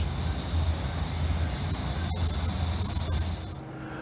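Steady hiss over a low hum from a working steam-heated distillation column. The sound drops away near the end.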